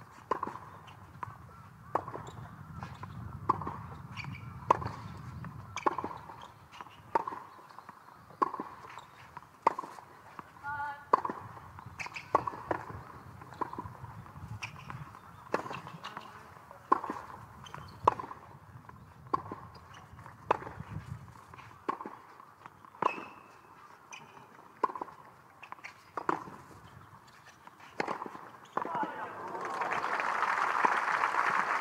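A long tennis baseline rally on a hard court: sharp racket strikes on the ball and ball bounces, about one stroke every 1.2 seconds, going back and forth for nearly half a minute until the point ends.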